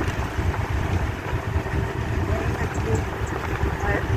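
Steady low rumble of road and engine noise inside a moving vehicle, with a faint even hum underneath.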